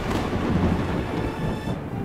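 Thunder sound effect: a long, loud rumble that dies away near the end.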